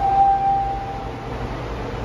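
A single electronic tone that starts suddenly and fades out over about a second, over a steady low hum.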